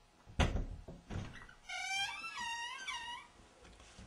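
A door thuds shut, with a second lighter knock just after. Then comes a high, wavering squeal, a few rising-and-falling cries lasting about a second and a half.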